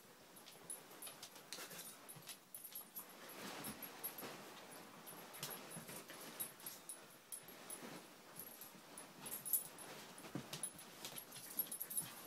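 Two Siberian husky puppies play-fighting: a quiet, irregular jumble of scuffles, clicks and small dog noises.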